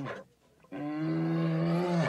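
Brown bear calling: a short call right at the start, then a longer, steady call held for about a second from just under a second in.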